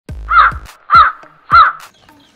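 A crow cawing three times, about 0.6 s apart, each caw loud and harsh with a deep thump under it.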